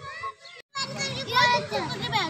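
Children's voices talking and calling out at play, with a brief silent gap less than a second in.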